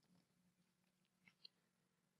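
Near silence: room tone, with one faint click about a second and a half in.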